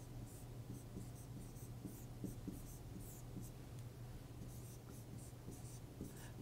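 Marker pen writing on a board: a faint run of short strokes as characters are written.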